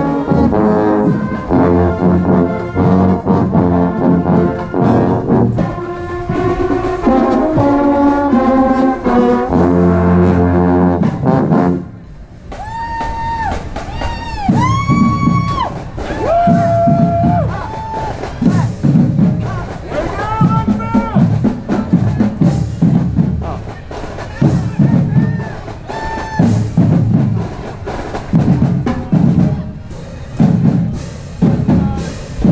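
Marching band brass, trombones and trumpets among them, playing a tune in full chords, close to the trombone; about twelve seconds in the horns cut off and a marching drum beat carries on, with a few short held high notes over it.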